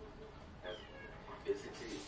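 Television drama dialogue playing at low volume: a man's voice talking, with a brief high downward-sliding sound a little under a second in.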